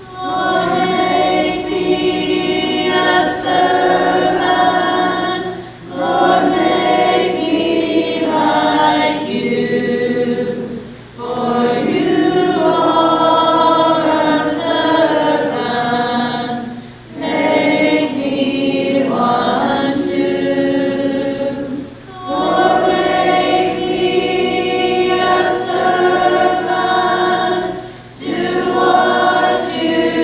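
A congregation of women singing a hymn together without instruments. The hymn moves in phrases of about five to six seconds, with a short breath between each.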